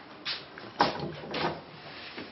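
Handling noise: a few short knocks and rattles of hands working wiring and fittings inside a car body, the loudest about a second in.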